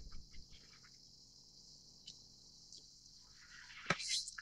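Faint handling of tarot cards on a table: a few small taps and slides in the first half-second as the cards are straightened, then two light ticks.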